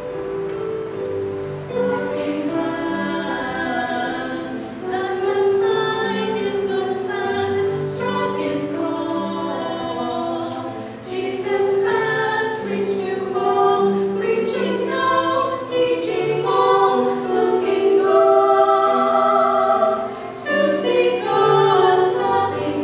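Four women singing a sacred song together in a small vocal ensemble, over an instrumental accompaniment that holds low notes beneath the voices.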